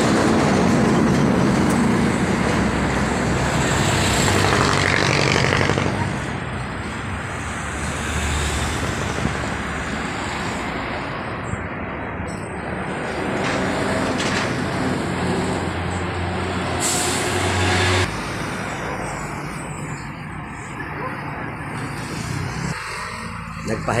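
Roadside traffic noise with a vehicle engine running close by, loudest in the first few seconds and easing off after about six seconds, with people talking in the background.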